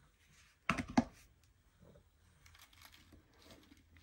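Dry rustling and crinkling of artificial fall foliage stems being handled and pressed onto a wreath, with a couple of sharp knocks about a second in.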